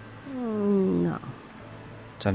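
A person's voice making one drawn-out wordless vocal sound that falls in pitch, lasting about a second and starting a quarter second in.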